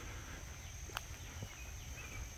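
Faint outdoor summer ambience: a steady high insect drone, with a couple of soft footsteps on the paved driveway about a second in.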